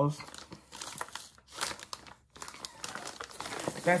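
Plastic packaging crinkling and rustling as a bagged pet car seat is handled, in irregular rustles that stop briefly twice around the middle.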